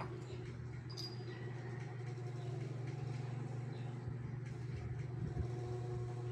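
A steady low mechanical hum, like a motor running, with a faint tick or two near the start.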